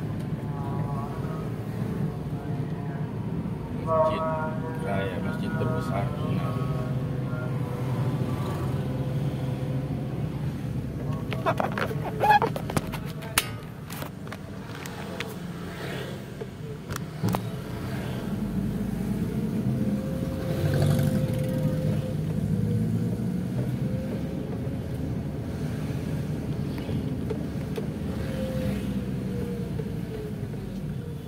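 Steady car engine and road noise heard from inside the cabin while driving in town traffic. A few clicks and knocks come around the middle, and there are brief voice-like sounds early on.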